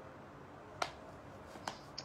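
Two short, sharp clicks about a second apart, the first louder, over faint room tone.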